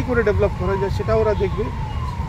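A siren in the background sounds a falling tone over and over, beneath a man's speech, with a steady low hum under it.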